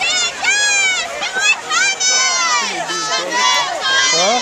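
Spectators shouting and cheering: several high-pitched voices yell in long calls that rise and fall, loud and close.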